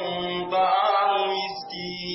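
A man reciting Qur'anic Arabic in a chanted, melodic style, holding long steady notes.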